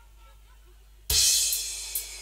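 About a second in, a loud cymbal crash with a bass-drum hit, ringing on and fading away. Before it there is only faint background.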